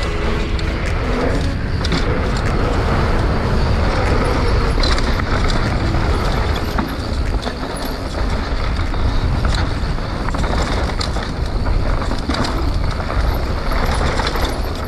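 Mountain bike riding over a dirt trail, picked up by a bike- or body-mounted action camera: heavy wind rumble on the microphone, tyre noise and constant clicking and rattling from the bike.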